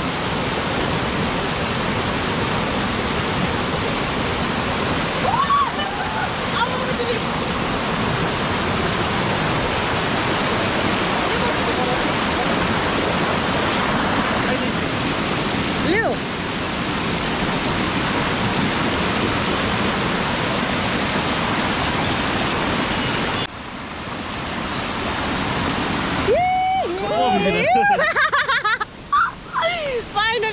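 Rushing stream water pouring over rocks in a steady, continuous rush. The rush drops away suddenly about three-quarters of the way through, and people's voices follow near the end.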